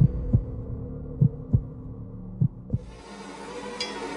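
A heartbeat-style thump in the soundtrack: pairs of low beats about a second apart over a steady held hum. About three seconds in, fuller music enters.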